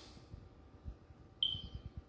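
A single short, high-pitched tone about one and a half seconds in that fades quickly, over a faint low rumble.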